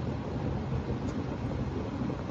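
Steady low rumble and hiss of a car's interior, picked up by the caller's phone microphone and heard over a video-call link.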